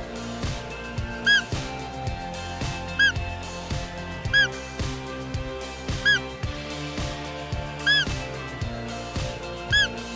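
Six short, high-pitched calls, each rising and falling, repeating about every one and a half to two seconds over background music: roe deer fiep calls used to lure a rutting roebuck.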